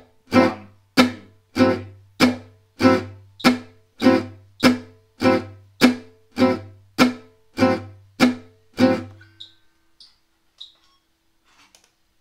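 Selmer-style gypsy jazz acoustic guitar playing la pompe rhythm on an A minor 6 chord: short, crisp strummed stabs on every beat at about 100 beats a minute. The strumming stops about nine seconds in.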